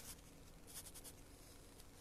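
Near silence, with a faint, brief scratchy rustle a little under a second in: a hand handling the phone that is recording.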